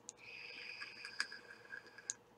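Faint draw on a vape mod: a steady, high thin whistle of air pulled through the atomizer, with a single sharp crackle about a second in.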